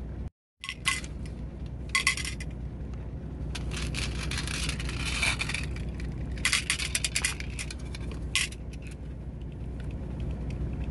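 Rose quartz stone beads clinking and rattling against glass dishes as they are tipped and dropped in by hand: single clicks early on, a longer rolling clatter around the middle, and a quick run of clicks later.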